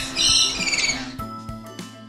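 Rainbow lorikeets screeching, with loud, high, rapidly pulsing calls for about the first second. Background music with held notes then takes over.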